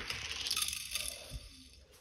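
Die-cast toy car's small wheels rolling fast down a plastic Hot Wheels track and off onto the floor, a light rattling whir that fades away over about a second and a half.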